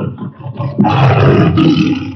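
Tiger roars laid over the title graphic: the end of one roar, then a second loud roar starting about a second in and lasting nearly a second.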